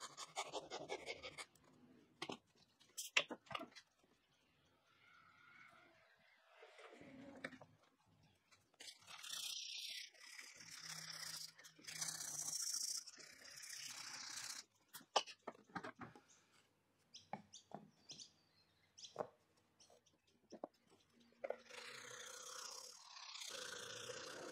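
Hand-sanding a small hardwood part with abrasive sanding sticks: bursts of rasping back-and-forth strokes, with scattered sharp taps and knocks of wood and tool on the workbench.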